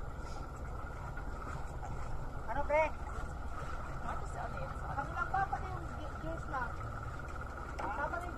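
A boat engine running steadily: a low rumble with a faint steady whine, under brief faint voices.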